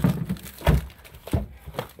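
Frozen packages of meat knocking and clunking against each other and the freezer drawer as a hand rummages through them: about four separate thunks, the loudest about two-thirds of a second in.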